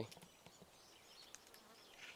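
Near silence: faint outdoor background with a faint insect buzz and a few small ticks.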